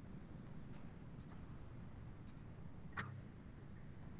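A few faint computer mouse clicks over a low steady hiss: a sharp click about three-quarters of a second in, two quick double clicks, and another click about three seconds in.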